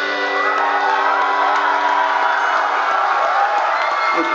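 A live rock band's held final chord ringing on while the audience cheers and whoops as the song ends.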